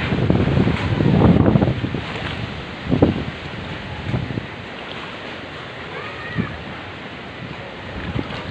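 Wind buffeting the phone's microphone, strongest in the first two seconds. A few short knocks come through, the sharpest about three seconds in.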